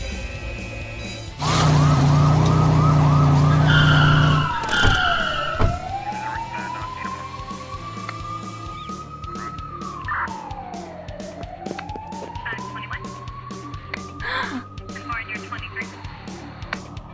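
A loud, fast-warbling siren for about three seconds, then a police siren wailing slowly down and up in pitch through two full cycles. Two short high tones sound near the change-over.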